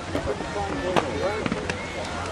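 Several voices talking over one another in the background, with a few sharp clicks, the loudest about a second in.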